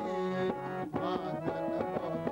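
Harmonium and tabla playing a kirtan accompaniment: steady held harmonium chords under quick tabla strokes, about four to five a second.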